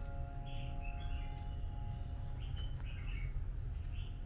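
Birds chirping in short calls over a steady low rumble, while the ringing tone of a chime struck just before fades away in the first second or so.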